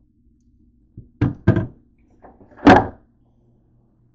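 Refrigerator door and a plastic soda bottle being handled: a light knock about a second in, two quick knocks just after, then a louder thud near the three-second mark, over a faint steady hum.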